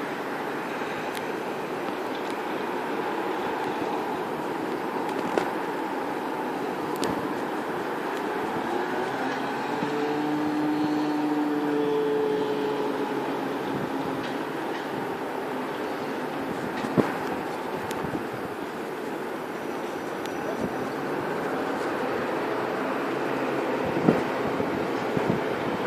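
Chiltern Railways Class 165 diesel multiple unit approaching, its diesel engines running in a steady hum that swells slightly, with a few faint clicks.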